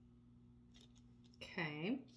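Quiet room with a steady low hum and a couple of faint clicks, then a woman's voice starts about one and a half seconds in with a drawn-out sound that dips and rises in pitch.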